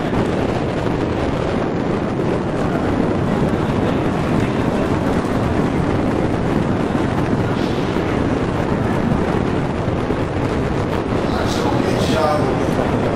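Steady rumbling wind noise on the microphone, with indistinct voices in the background.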